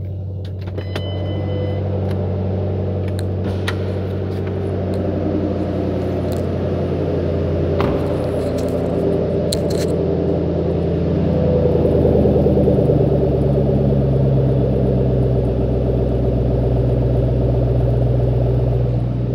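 A 2009 Ford Mustang GT's 4.6-litre SOHC V8 idling steadily, its low exhaust rumble heard close to the rear tailpipe and growing somewhat louder about halfway through. A few light clicks sound over it.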